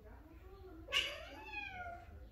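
A Persian cat's loud yowl, starting abruptly about a second in and falling in pitch over about a second.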